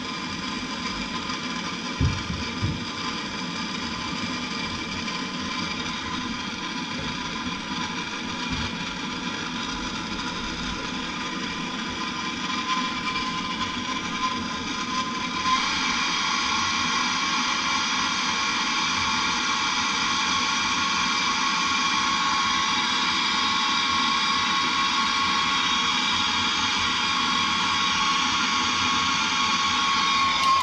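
Handheld gas blowtorch burning with a steady hiss and a faint whistle while it heats soldered copper pipe joints on a thermostatic mixing valve. It gets louder about halfway through.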